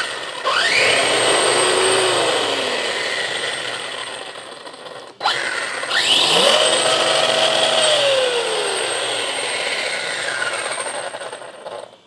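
The brushless motor and drivetrain of a YiKong RC off-road truck, free-spinning with its wheels in the air. The whine rises sharply, then winds down with a slowly falling pitch, twice: once starting about half a second in and again about six seconds in.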